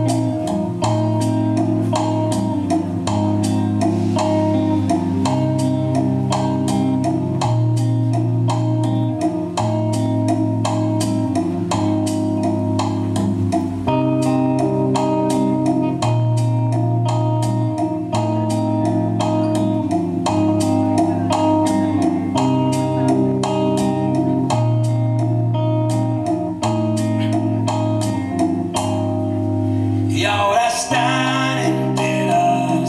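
Electric guitar and percussion playing the instrumental opening of a slow currulao-style song, with a low bass line held in long notes under steady, closely spaced percussion strokes.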